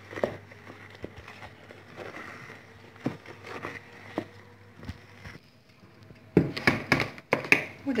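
A spatula folding thick chocolate sponge batter in a plastic bowl: soft wet scraping with light taps against the bowl, then a run of louder knocks and clatters near the end.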